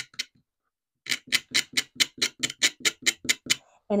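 A utility knife blade scraped back and forth across the suede side of a small leather piece, starting about a second in as a quick, even run of short strokes, about five a second. The leather is being roughed up so that glue will grip it.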